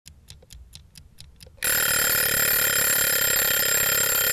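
A clock ticking quickly, then about one and a half seconds in a loud alarm-clock ring cuts in and holds steady.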